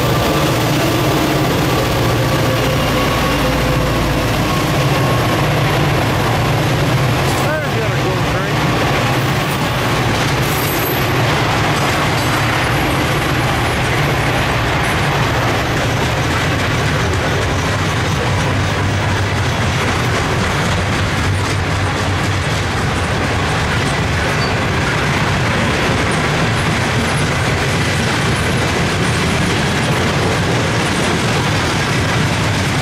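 Norfolk Southern diesel-electric freight locomotives passing close by with a deep engine rumble. They are followed by a steady rumble and clatter of coal hopper cars rolling over the rails.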